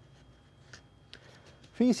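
Near silence with a faint low hum and a few faint ticks, then a man starts speaking near the end.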